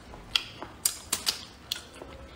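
Close-miked eating sounds: a person chewing, with a run of sharp, irregular wet clicks, about five or six in two seconds.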